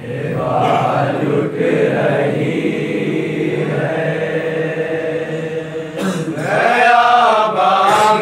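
Men's voices reciting a nauha, a Shia Urdu lament, sung without instruments by a lead reciter and his chorus. There is a short dip about six seconds in.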